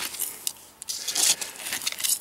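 Gavko Spartan knife blade stabbing and scraping through loose, stony soil, giving irregular gritty crunches and scrapes, the strongest a little over a second in.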